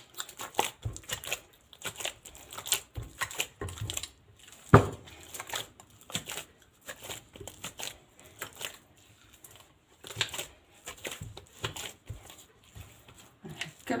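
Soft, sticky bread dough being kneaded by hand in a glazed ceramic dish: a busy run of irregular wet squelches and slaps, with one louder slap about five seconds in.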